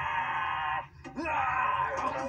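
A puppet character's voice giving two long, wavering wails, each just under a second, with a short break between.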